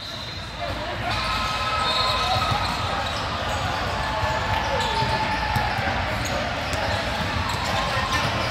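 Basketball being dribbled on an indoor court amid the steady chatter of many voices echoing in a large hall.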